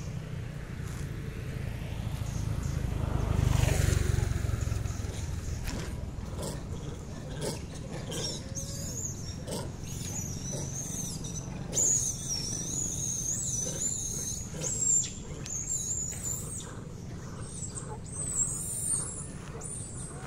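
A motor vehicle passes, swelling and falling in pitch about three to five seconds in. From about eight seconds a thin, high wavering whine runs on, with a few short knocks.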